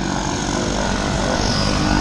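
Propeller airplane engines running with a steady, loud drone of even low tones under a noisy hiss.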